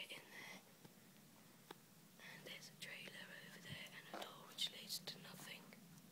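Faint whispering voices in two short stretches, with a few soft clicks.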